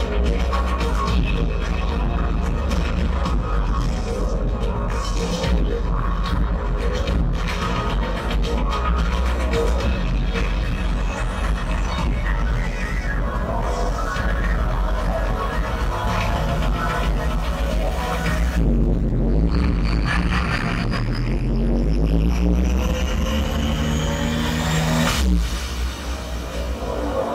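Electronic music with a steady heavy bass. In the last third a rising sweep builds for several seconds and breaks off sharply near the end.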